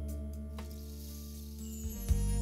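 Instrumental song intro on electronic keyboard: held chords over a deep bass note, with a hissy swell building up near the end.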